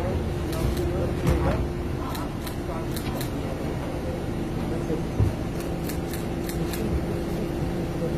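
Indistinct voices of people greeting one another over a steady low hum, with short runs of sharp clicks about two and a half seconds in and again about six seconds in.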